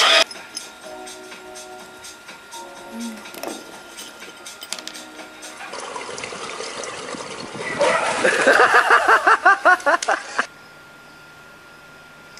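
Water splashing in a swimming pool, joined by a person laughing loudly over and over; both cut off suddenly about ten seconds in.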